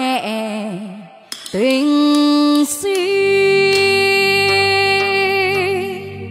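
A woman singing wordless, long held notes with vibrato into a handheld microphone. A steady backing accompaniment comes in under her about halfway through.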